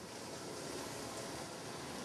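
A steady, faint hiss of background noise, even across high and low pitches, with no distinct event in it.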